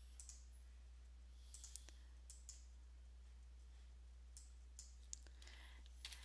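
Several faint, sharp computer mouse clicks scattered through near-silent room tone with a steady low hum.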